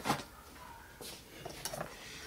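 Faint handling sounds on a workbench: a few light clicks and taps as small tools and a sandal strap are picked up.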